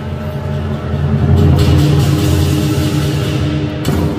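Lion dance drumming: a large lion drum with cymbals and gong playing a sustained, dense rumble. It swells about a second in, with cymbals washing over it, and a sharp crash lands near the end.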